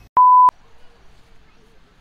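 A single short electronic beep: one steady high tone about a third of a second long, loud, switching on and off abruptly with a click at each end.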